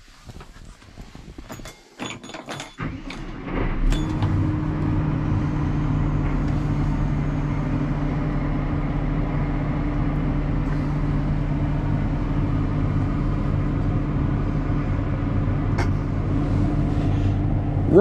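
Deutz-Fahr 8280 TTV tractor's six-cylinder diesel engine being started, heard from inside the cab: a few clicks, then the engine catches about four seconds in and settles into a steady idle.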